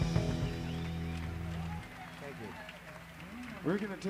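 Live electric rock band's guitars and bass holding a final chord that rings down and stops about two seconds in. A man then starts talking into the stage microphone near the end.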